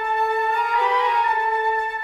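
Suspenseful instrumental music: a flute holding long, mysterious notes over a sustained lower note, its pitch wavering briefly about a second in.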